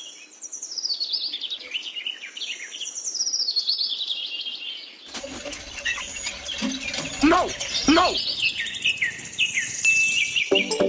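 Songbirds chirping and singing continuously. About five seconds in, a louder and fuller layer of sound joins, with two short rising squeaks about a second apart.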